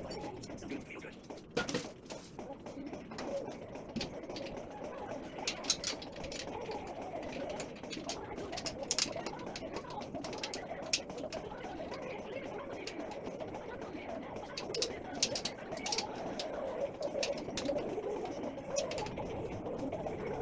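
Scattered clicks and taps from a metal coffee-table frame and its packaging being handled during assembly, over a continuous wavering mid-pitched background sound.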